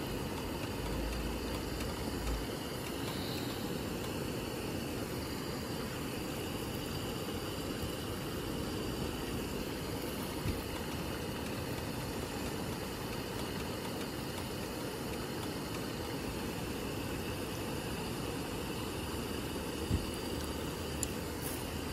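Pot of noodles at a rolling boil on a gas stove: a steady low rumble of the burner flame and bubbling water.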